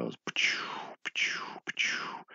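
A stylus scratching across a drawing tablet in three short strokes, each a hiss that slides down in pitch.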